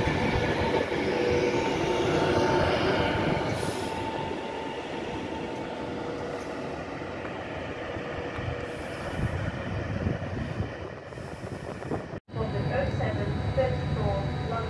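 Avanti West Coast Class 390 Pendolino electric train running past and drawing away, its wheels rumbling on the rails under a steady two-note whine. The sound fades over about ten seconds and breaks off sharply about twelve seconds in.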